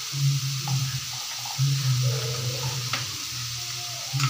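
Shredded carrot, potato and onion frying in oil in a nonstick pan: a steady sizzle with a couple of faint clicks. A low hum comes and goes in several stretches.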